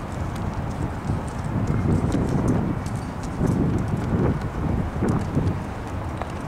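Wind buffeting the camera microphone, an uneven low rumble that swells about a second and a half in and eases near the end, with scattered faint ticks over it.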